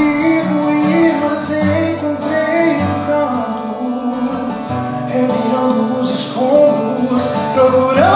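A man singing a ballad melody in sustained, gliding notes while strumming chords on an acoustic guitar.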